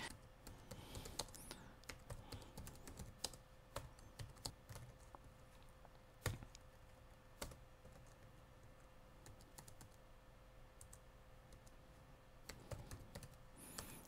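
Faint typing on a computer keyboard: irregular keystrokes, thick for the first half, then a lull of a few seconds before a last few keys near the end.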